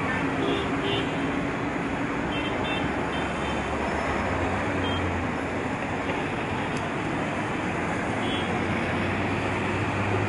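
Busy multi-lane city road traffic of cars, buses, motorbikes and auto-rickshaws: a steady wash of engine and tyre noise. A low engine drone swells about four seconds in, and a few short, faint high tones sound over it.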